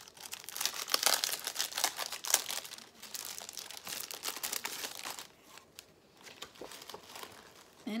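Paper and tissue-paper packing rustling and crinkling as a pack of printed craft paper is lifted out of a box and its sheets are pulled apart. The handling is busiest for the first five seconds, then quieter.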